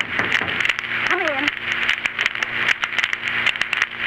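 Steady hiss and crackle of an old 1930s radio transcription recording, with a low hum under it. A single short voiced sound rises and falls about a second in.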